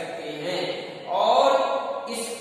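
Speech: a man's voice lecturing in Hindi, with one long drawn-out syllable about a second in.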